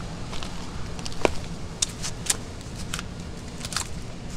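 Scattered light clicks and crinkles of a person moving about and handling crumpled sheet material, over a low steady hum.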